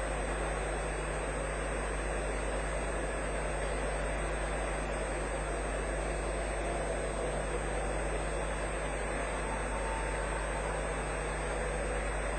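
Steady, even background noise of a large hall with a low hum underneath; nothing sudden, and no single voice stands out.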